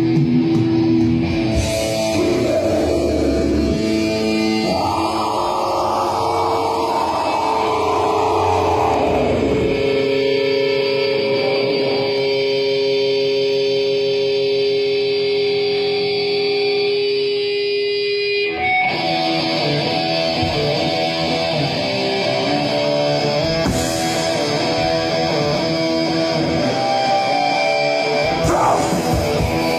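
Metal band playing live with distorted electric guitars and drums. About ten seconds in, the low end drops away and held guitar notes ring on for several seconds. The full band comes back in about 19 seconds in.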